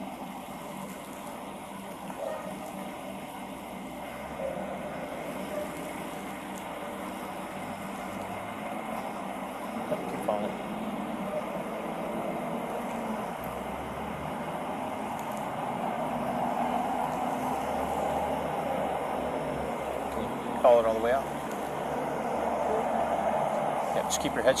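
Steady street vehicle noise, swelling a little past the middle, with brief faint voices about ten seconds in and again near the end.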